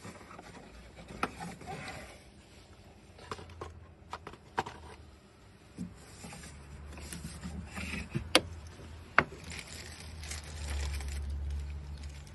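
Scattered sharp clicks, knocks and scrapes as a gloved hand searches among the parts of a car's engine bay. A low rumble grows over the last couple of seconds.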